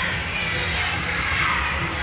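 Steady background hubbub of a busy indoor public space: music and distant chatter mixed together, with no distinct nearby sound.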